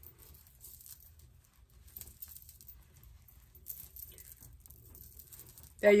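Faint, intermittent rustling of hair and fabric as hands adjust a headband wig and its scarf band, with a few brief louder rustles about two and four seconds in.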